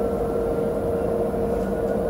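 Steady low mechanical rumble and hum with one constant mid-pitched tone, unchanging throughout.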